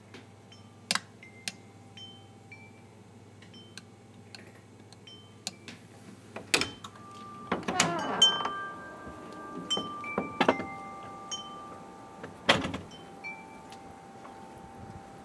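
Chime-like ringing at several pitches: short clear notes, some held for a few seconds, as from wind chimes. Sharp clicks and knocks come between them, the loudest cluster around the middle.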